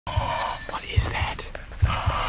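A person whispering, with a few short low thumps.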